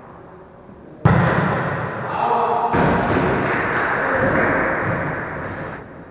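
A volleyball is hit with a sharp thud about a second in, followed by echoing gym-hall noise with players' voices.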